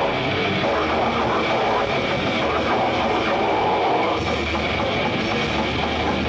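Thrash metal band playing live: distorted electric guitars, bass and drums in a dense, continuous wall of sound.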